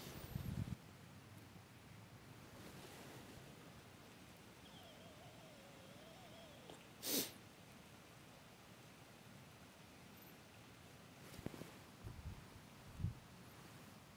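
Very quiet stretch, with a soft rustle at the start and one short, sharp puff of a person's breath about seven seconds in, then a few faint ticks near the end.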